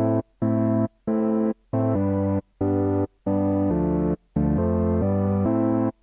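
U-He Diva software synthesizer playing about nine short, separated notes at varying pitches. It is a plain, unprocessed tone from a freshly initialised patch using the digital oscillator, filter and envelope with nothing else switched on. Each note starts and cuts off cleanly.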